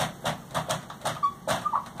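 Dry-erase marker writing on a whiteboard: a run of quick taps and scratches from the tip, with two short squeaks in the second half.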